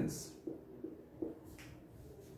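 Whiteboard marker writing on a whiteboard: a handful of faint, short squeaks and clicks, a few a second, as the tip is pressed and dragged across the board. A man's spoken word ends just at the start.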